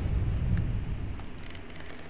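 Low rumbling drone from a horror trailer's sound design, slowly fading.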